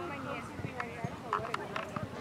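Players' and spectators' voices calling out indistinctly across a soccer field during play, with a few scattered sharp taps.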